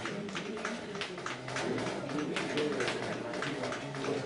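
Writing on a lecture-hall board: a run of short taps and scratches, several a second, as equations are written out.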